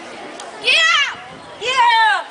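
Two sharp, high-pitched kiai shouts, each about half a second long and falling in pitch at the end, from a martial artist executing a throw, over faint crowd hubbub.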